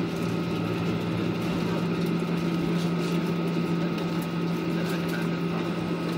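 Airliner cabin noise during the landing rollout, heard from a window seat over the wing: the jet engines and runway rolling make a steady hum with a constant low drone.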